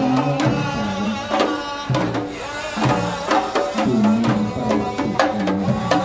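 Hand-held frame drums beaten in a traditional rhythm, with a chanted vocal melody over them.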